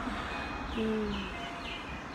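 A bird calling: a run of short chirps that each drop in pitch, about two a second, starting under a second in, over a low steady rumble.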